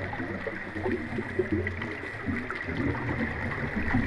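Gurgling, bubbling water heard underwater, with a faint steady high tone.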